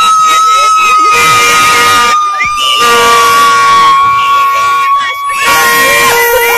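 Plastic fan horn blown in one long, loud held note that sags slightly in pitch, with a second, lower horn note droning underneath. Spectators shout over it.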